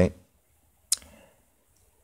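A single short, sharp click about a second in, fading quickly.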